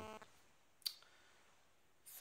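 Near silence, broken by one single sharp click just under a second in.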